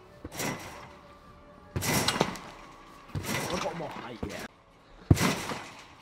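Garden trampoline bed and springs taking repeated bounces, a thump roughly every second and a half, with one sharp knock about five seconds in.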